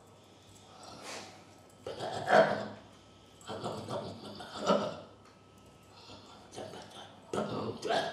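A man's voice making short wordless vocal sounds in irregular bursts, a second or two apart, as he signs: the voicing of a Deaf signer, not spoken words.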